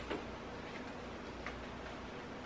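A few light clicks and knocks of shoes being picked up and handled off the floor: the loudest right at the start, a fainter one midway and another about a second and a half in, over a faint steady room hiss.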